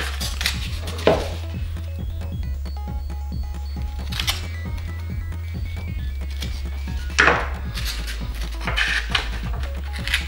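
Foam-board airframe parts being handled on a wooden work table, with about four short rubbing or scraping sounds, the loudest about seven seconds in. Quiet background music plays throughout.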